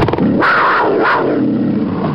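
Loud big-cat roar used as a panther sound effect for a station ident, starting abruptly.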